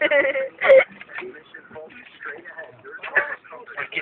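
Indistinct voices talking in the truck cab, loudest in the first second and again about three seconds in.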